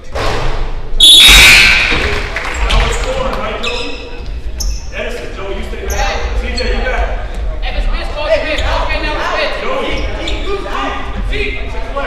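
Basketball game in an echoing gym: a loud burst of voices about a second in as a free throw goes up, then steady talk from spectators and players with a basketball bouncing on the hardwood floor.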